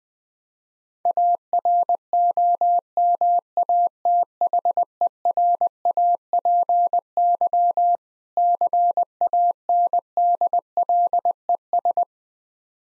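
Morse code sent at 20 words per minute: a single steady mid-pitched tone keyed on and off in dots and dashes, starting about a second in. It spells "AROMATHERAPY CANDLES", with a short pause between the two words about two-thirds of the way through.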